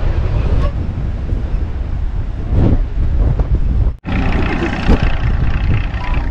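Wind buffeting the microphone, a steady low rumble, with faint voices beneath it; the sound breaks off for an instant about four seconds in.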